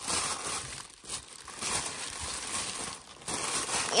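White tissue paper crinkling and rustling as hands unwrap it from a trading-card pack. The rustle comes in uneven spells, with short lulls about a second in and again near three seconds.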